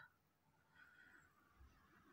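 Near silence, with only a very faint, brief sound a little under a second in.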